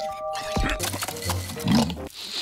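Cartoon soundtrack music, with held notes in the first second, and a cartoon bear's wordless vocal sounds later on.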